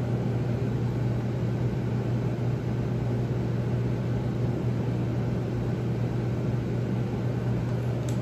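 Steady low machine hum with an even hiss over it, running unchanged throughout.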